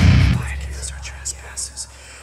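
Nu-metal recording in a quiet break: a heavy low chord rings out and fades within the first half second, leaving sparse electric guitar under a faint whispered voice.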